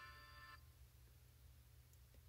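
Near silence: room tone with a low hum, after a faint held musical note that stops about half a second in.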